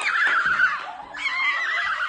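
Young women shrieking with emotion: two long, wavering, high-pitched cries, the second starting about a second in, a joyful reaction to learning they have won first prize.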